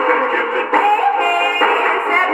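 A 1958 pop record on a 78 rpm shellac disc, played acoustically through an HMV Style 7 gramophone's wooden horn. The music comes out thin and boxy, with almost no bass and a dull top.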